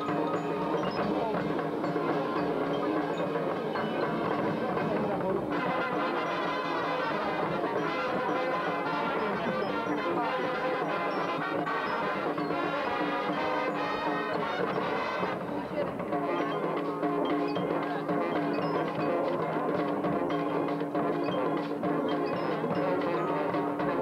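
High school marching band playing its field show: brass with percussion, rising to a fuller, brighter passage from about five to fifteen seconds in.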